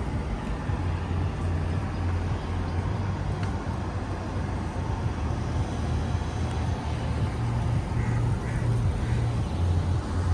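Steady outdoor city background noise, dominated by a low rumble.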